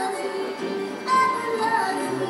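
Music: a high voice singing a slow melody with held notes.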